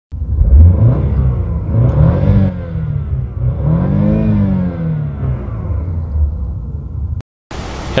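Car engine revving in park: the revs rise and fall twice, the second and larger rise about four seconds in, then settle back toward idle before the sound cuts off suddenly near the end.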